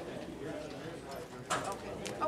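Low, indistinct talk picked up off-microphone in a meeting room, with one sharp knock about one and a half seconds in.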